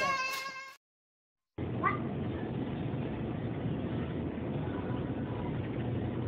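A small child's high, wavering whine or cry that stops abruptly under a second in. After a short gap of dead silence comes a steady low hum and hiss of store background noise, with one brief high chirp soon after.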